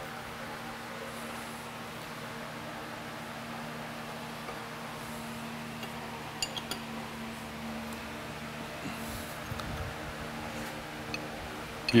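Steady hum of a shop machine, with a few faint metallic clinks about six and a half seconds in and again near the end, as wrenches work the lathe tailstock's base bolts to shift it sideways.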